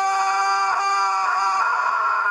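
A boy's long, loud yell held on one steady pitch, a mock Super Saiyan power-up scream.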